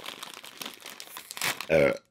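Plastic snack bag crinkling and crackling as hands pull it open, with a louder rustle about one and a half seconds in.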